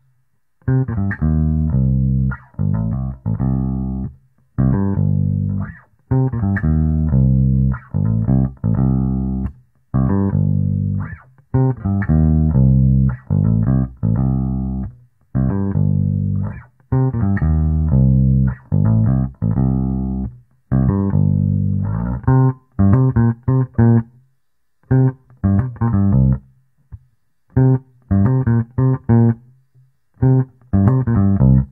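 Homemade semi-hollow electric bass guitar with lipstick pickups, played fingerstyle: phrases of plucked bass notes with short breaks between them, turning to shorter, choppier notes in the last third. The bridge pickup's two coils are wired in series with the tone control rolled fully off, so the notes have little treble.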